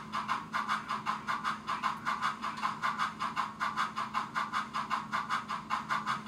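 SoundTraxx Tsunami2 steam sound decoder in a model locomotive, playing a quick, even run of articulated-locomotive exhaust chuffs over a steady low hum. The medium wheel-slip setting lets the front and rear sets of drivers drift in and out of sync, so the chuff pattern shifts.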